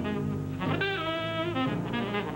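Saxophone playing a fast jazz line of quickly changing notes with pitch bends, over lower sustained accompaniment notes.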